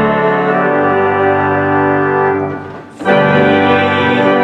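Organ playing slow, held chords, a phrase fading to a brief break just before three seconds in, then a new chord starting.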